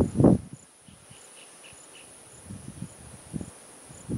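Sri Lankan elephant feeding on grass: a loud rustling thud at the very start, then softer scuffs and thumps a couple of seconds later as its trunk and feet tear at the turf. Crickets keep up a steady high drone with a regular ticking chirp throughout.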